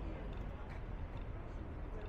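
City street ambience: a steady low rumble of traffic with faint, indistinct voices of passers-by.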